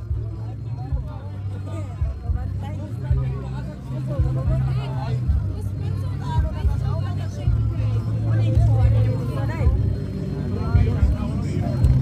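Low, steady engine drone of racing motorized bangka outrigger boats, under indistinct crowd chatter.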